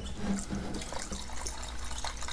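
Paint reducer pouring in a steady thin stream from a metal gallon can into a plastic mixing cup of primer, a continuous trickling fill.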